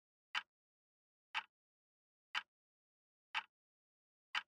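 A clock ticking: four short, sharp ticks evenly spaced about a second apart, with silence between them.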